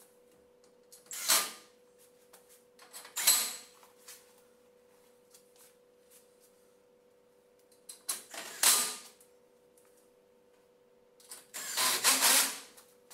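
Cordless drill-driver run in four short bursts of about half a second each, driving the screws that fix a mosquito screen's aluminium guide rails to the wall.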